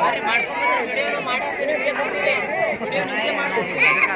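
Many young children's voices chattering and calling at once, overlapping without a break.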